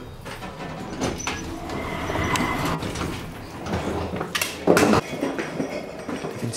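Hotel lift running, a steady low rumble in the cabin, with a loud clunk near the end as the rumble stops and the lift arrives with its doors opening.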